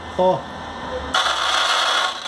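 Wire-feed motor and gear drive of a MIG 150BR V8 welder running, coming in steadily about a second in, while the feed roller slips under light finger pressure instead of pulling wire. The cause is a feed gear riding up over another because its plastic part is worn.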